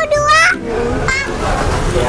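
Children's voices: short, high-pitched vocal sounds in the first half-second and again about a second in, over low background noise.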